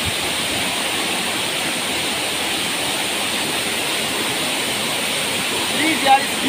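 A waterfall pouring down stepped rock ledges into a pool: a loud, steady rush of falling water.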